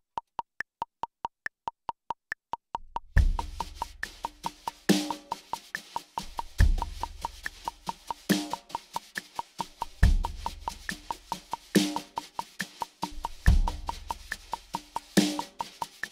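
A metronome clicks at a steady sixteenth-note pulse for about three seconds. Then wire brushes join it, playing inverted double-stroke taps on a snare drum at 70 beats a minute, with a kick drum on beat one and a brush accent on the snare on beat three of every bar.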